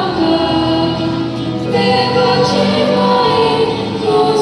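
A choir singing a hymn in slow, held notes.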